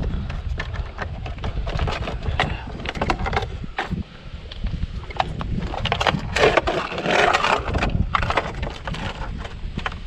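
Pliers and gloved hands working the metal terminal nuts on a hard plastic electrical housing: irregular clicks, knocks and scrapes, with louder clattering of the plastic casing about six to seven and a half seconds in as it is opened and turned over.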